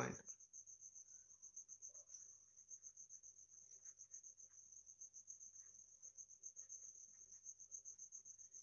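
Near silence: faint scratching of a ballpoint pen writing on paper, over a steady, high-pitched pulsing insect trill in the background.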